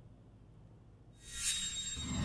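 About a second of near silence, then a rising whoosh swells in: a transition sound effect leading into music.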